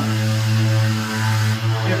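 Mirka Leros electric drywall sander switched on with its head held flat against the wall, running with a steady, loud hum.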